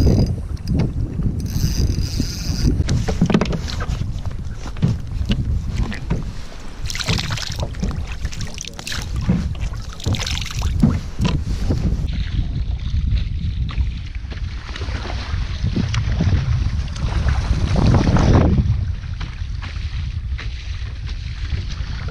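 Wind buffeting the microphone and water slapping against a kayak's hull on a choppy sea. Scattered knocks and clicks of fishing tackle being handled come through in the first half, and a louder gust or wash swells near the end.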